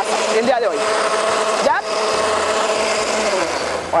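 Countertop blender running steadily, puréeing a salsa of roasted tomatoes, chiles and toasted sesame, then switched off near the end.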